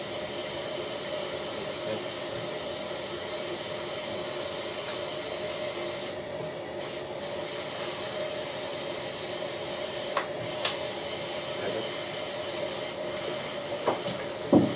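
Dental surgical suction running: a steady hiss with a low hum, and a brief rougher stretch of suction about six seconds in. Two small clicks a little past the middle.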